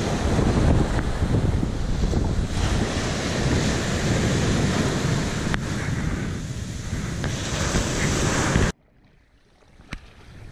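Mediterranean surf: small waves breaking and washing up a sand beach in a steady rush of water and foam, which cuts off suddenly near the end.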